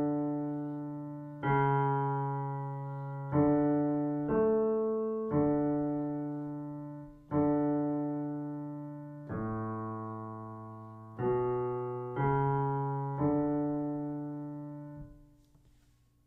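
Piano playing a slow single-line dictation melody in D major in the bass register, an octave below the treble version, in quarter and half notes. There are about ten notes, each struck and left to decay, and the last is held and fades out shortly before the end.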